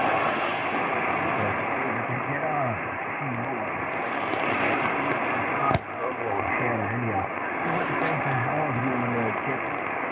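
Shortwave AM broadcast on 6200 kHz heard through a Belka-DX receiver: a voice buried in steady static hiss, too weak for words to be made out. A single sharp crackle comes about six seconds in.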